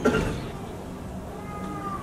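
A man's voice chanting a melodic recitation through a microphone and hall PA: a short, loud, cry-like syllable at the very start, then a quieter, long drawn-out note near the end.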